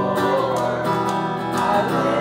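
Acoustic guitar strummed in a song, with a voice singing along.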